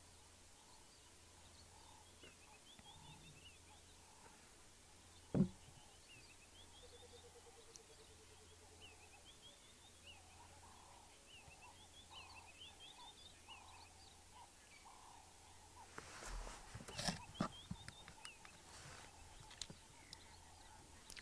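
Quiet bush ambience with faint, repeated bird chirps. A single sharp knock comes about five seconds in, and a few clicks and rustles come near the end.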